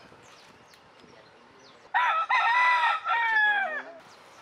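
Rooster crowing once, about halfway through. The crow lasts nearly two seconds, with a brief break in the middle, and falls in pitch at the end.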